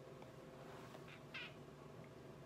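Near silence, with two faint, short, high squeaks about a second in: air squeaking past a silicone suction lip-plumper cup held against the lips.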